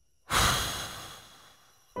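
A man's long sigh, a heavy breath out close to the microphone. It starts suddenly about a third of a second in and trails off over about a second and a half.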